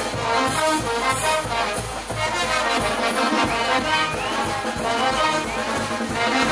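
Brass band music: trumpets and trombones playing a lively dance tune.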